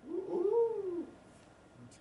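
A person's drawn-out "ooh" of surprise, one call of about a second that rises and then falls in pitch.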